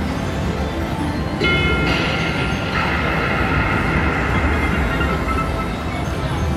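WMS Vampire's Embrace video slot machine playing its electronic game sounds over a steady rumbling background: a chord of steady synthetic tones comes in about a second and a half in, shifts to a lower tone about three seconds in and fades near the end, as the reels land on a 160-credit line win.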